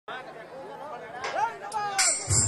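Indistinct voices talking, with chatter in the background.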